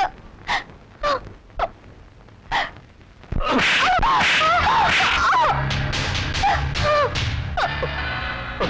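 A few short gasping sobs, then about three seconds in a loud film-score cue comes in suddenly, with many sliding melody lines over a low steady drone.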